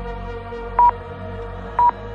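Two short, high electronic beeps about a second apart from a workout interval timer, counting down the last seconds of an exercise interval, over background music.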